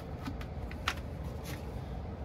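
Faint clicks and knocks from a plastic bleach jug and its cap being handled, the clearest about a second in, over a steady low hum.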